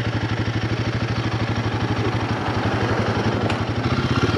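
Royal Enfield Guerrilla 450's single-cylinder engine running at steady low revs, its firing pulses coming in an even beat.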